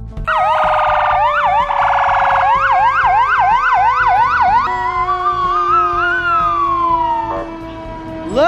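Fire truck's electronic siren sounding, starting suddenly with a fast warble and rapid up-and-down yelp sweeps, then slowing to a wavering tone and winding down in a falling glide near the end.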